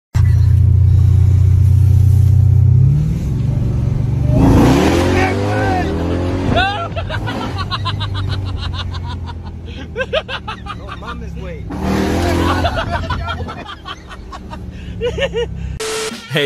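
Car engine pulling hard, heard from inside the cabin, loudest and steady for the first three seconds, then lower. A passenger yells and exclaims over it through the rest.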